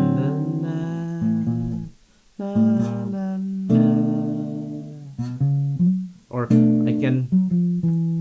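Acoustic guitar playing a chord progression with passing chords, a handful of chords struck and each left to ring out.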